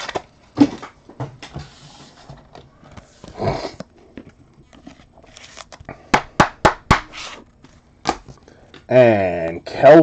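Paper trading cards being handled and flicked through by hand: soft rustling, then a quick run of about six sharp card snaps about six to seven seconds in. A man's voice starts near the end.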